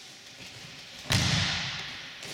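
An aikido uke's body hitting the mat in a breakfall about a second in: one sudden thud with a slap, echoing briefly in the hall.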